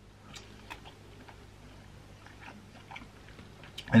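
Faint chewing of a bite of cooked chargrilled chicken fillet, with a few small soft mouth clicks.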